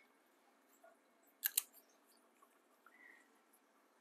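Fountain pen parts being handled over a desk: two quick light clicks close together about a second and a half in, otherwise very quiet.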